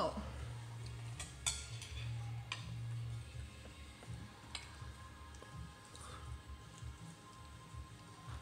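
A baby's wet mouthing and smacking as she eats soft, juicy baked acorn squash from her fingers: a few scattered small clicks over a steady low hum.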